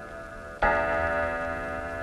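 Bell-like chime on a cartoon soundtrack: a ringing tone carries on, and a fresh stroke sounds about half a second in and rings steadily.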